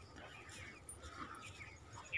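A dog whimpering faintly a couple of times over quiet outdoor background.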